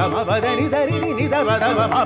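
Carnatic classical music in raga Bhairavi: a male voice sings fast phrases thick with oscillating gamakas, with melodic accompaniment, over a steady drone.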